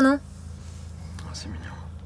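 A voice says a short word at the very start, then a quiet stretch of steady low hum with a soft breathy whisper about a second and a half in.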